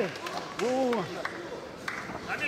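Crowd noise around the cage, with one short shouted call from a man, rising then falling in pitch, about half a second in.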